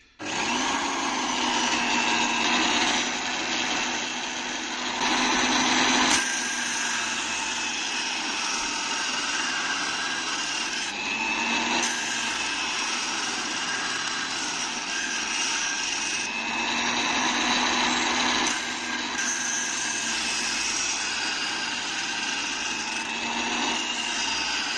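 Corded electric drill switched on and running steadily, spinning an abrasive wheel in its chuck that grinds the flat face of a hand-forged knife blade. The motor hum and grinding hiss start suddenly and swell and ease several times as the blade is worked.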